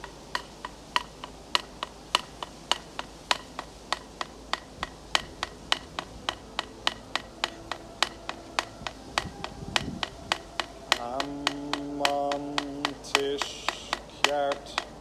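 Two pieces of antler knocked together in a steady rhythm, about three sharp clicks a second. About eleven seconds in, a man's voice joins with a low, held chanted tone.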